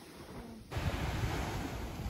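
Small waves washing onto a sandy beach, with wind buffeting the microphone. The sound jumps abruptly louder a little under a second in.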